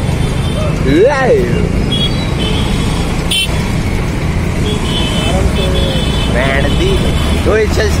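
Road traffic: a steady low rumble of vehicles, with horns tooting briefly several times.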